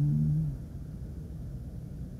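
A man's short hummed "mm", about half a second long, right at the start, followed by a steady low rumble of room noise.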